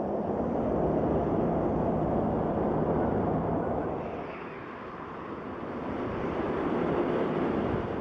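Steady rushing noise of a vehicle driving through a blizzard, with wind and a low engine hum beneath it. The noise eases a little around the middle and builds again.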